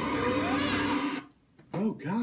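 A cartoon soundtrack played through a TV speaker. A dense electronic drone of steady tones and warbling sweeps cuts off suddenly about a second in. Near the end, a man's voice makes a short vocal sound that rises and falls in pitch.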